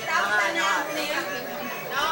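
Chatter: several people talking at once, with no clear single speaker.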